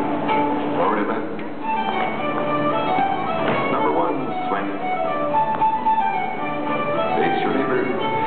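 Country-dance music starting up, a melody of short held notes over a steady beat. People's voices can be heard underneath.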